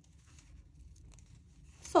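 Faint rustling and light ticks of yarn drawn over wooden knitting needles as a purl stitch is worked.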